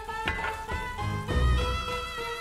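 Background music: held melodic notes changing every half second or so over a recurring low bass pulse.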